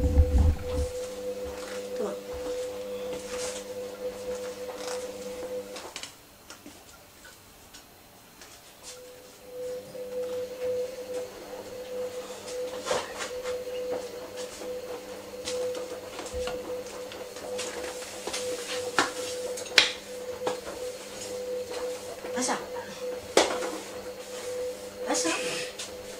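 Household cleaning clatter: dishes, utensils and other kitchen things knocked and set down on a countertop in scattered clicks and clunks. Under it runs a steady hum that stops for about three seconds some six seconds in, then comes back.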